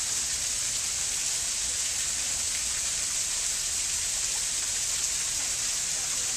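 Small waterfall pouring onto rocks: a steady, even rush of falling and splashing water.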